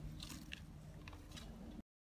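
Faint outdoor ambience: a low rumble with a few soft, irregular crunching clicks. It cuts off suddenly to silence near the end.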